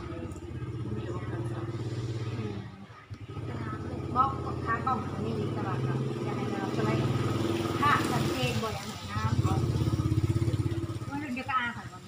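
Motorcycle engine running steadily close by, dropping away briefly about three seconds in and again about nine seconds in.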